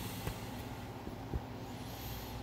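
Steady low background hum with two brief knocks, a light one about a quarter second in and a louder, duller thump just past the middle.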